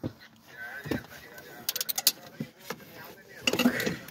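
Hand ratchet wrench clicking in short quick runs, with sharp metal clicks of tools at work on bolts in a car engine bay.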